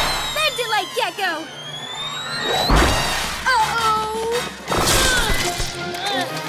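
Cartoon action soundtrack: background music with heavy impact thuds about three seconds in and again near five seconds, mixed with high, squeaky cartoon character vocal sounds.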